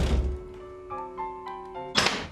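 A door shutting with a thump at the start, over soft music: a held low note, with a few higher notes coming in about a second in.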